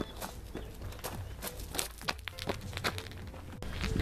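Footsteps crunching on a gravel path, irregular steps over a low rumble, breaking off suddenly near the end.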